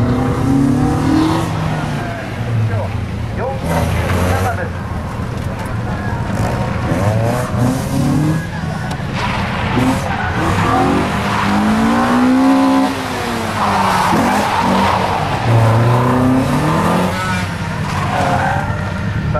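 Toyota Altezza SXE10's engine revving up and falling off again and again as the car is driven hard around a cone course. Its tyres skid with a hissing squeal through a turn about fourteen seconds in.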